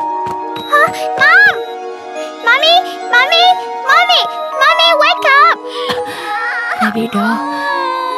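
A child crying in three bouts of high, wavering wails over background music with long held notes.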